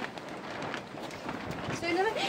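Indistinct voices over a noisy background, with a few short knocks.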